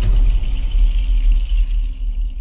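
TV channel ident music: a sudden deep bass hit that rumbles on, with a fainter high ringing layer above it that fades near the end.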